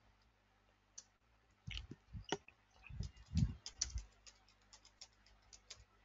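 Computer keyboard typing: quiet, irregular keystrokes, densest in the middle, thinning to a few scattered taps near the end.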